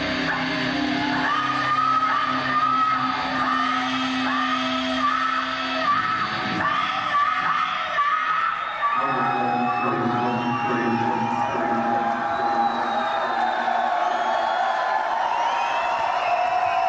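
A heavy metal band's final held chord with a wavering high note over it, breaking off about six seconds in; then the concert crowd cheers, whoops and yells.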